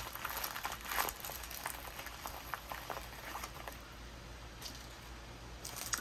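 Faint rustling, crinkling and soft taps of a diamond painting canvas being rolled up by hand, busiest in the first couple of seconds and quieter after.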